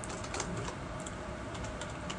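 A few light computer-keyboard keystrokes as a word is typed, over a steady low background hum.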